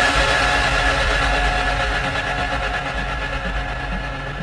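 Progressive house breakdown: a sustained synth chord held over a deep bass drone, without a beat, slowly fading as its highs are filtered away.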